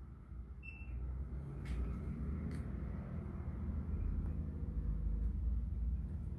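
A 1963 Bridgeport mill's table being driven through a one-inch X-axis move by the ProtoTrak MX2 control's drive motor and ball screw. It makes a low steady hum that sets in just after the start and holds, with two faint clicks in the first three seconds.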